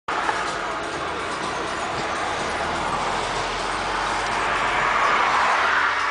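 Steady rush of wind and road noise heard from inside an open-top convertible driving in traffic, growing a little louder near the end.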